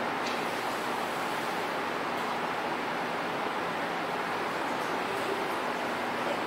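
Steady room noise: an even hiss with a faint low hum underneath, unchanging throughout.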